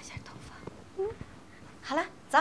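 Soft, hushed speech from a woman, in short fragments, with a few light clicks from handling.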